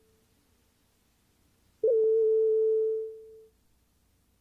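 A steady electronic test tone at a single pitch just under 500 Hz, the line-up tone that goes with a TV station's videotape slate. It starts abruptly about two seconds in, holds for just over a second, then fades out over about half a second.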